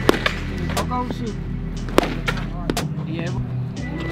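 Background music with vocals, over which a wooden bat cracks against softballs in front-toss batting practice: two loud hits about two seconds apart, with a few fainter clicks between.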